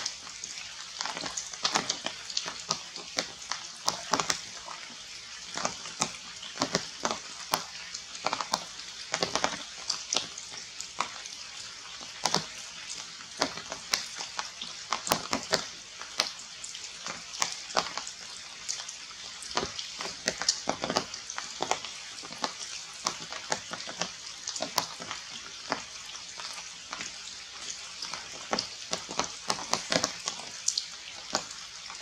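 Rain falling on tree leaves: a steady, dense crackle of many small irregular drip clicks.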